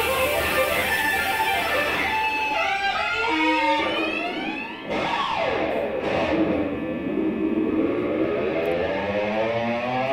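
Instrumental rock: electric guitar and violin playing a fast lead line, with notes swooping up and down in pitch, and a brief drop in level about five seconds in. By the second half the guitar carries the melody alone.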